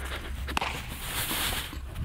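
Ground-ball fielding on artificial turf: soft scuffing of feet and ball on the turf, with one sharp tap about half a second in.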